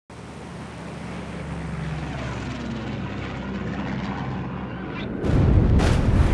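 Propeller aircraft engines droning steadily and growing louder, then a deep, loud explosion rumble a little after five seconds in, as of a bomb blast in an air raid.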